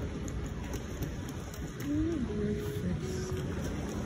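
Steady low background noise of an open railway platform, with a few faint short tones around the middle.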